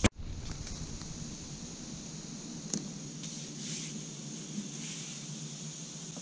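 Crickets chirring steadily in a high, thin drone, with a faint click and a soft brief rustle about halfway through.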